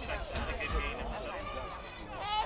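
Indistinct, overlapping voices of players, coaches and spectators around the football field, with no clear words, over a steady low rumble.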